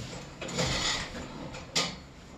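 Objects being handled: a scraping, rustling noise about half a second in, then a single sharp clack near the end.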